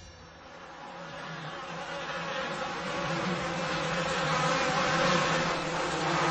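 A steady buzzing hum that slowly grows louder.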